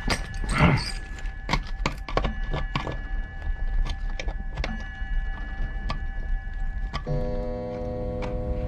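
Irregular small clicks and knocks over a faint steady tone, then a held musical chord comes in about seven seconds in.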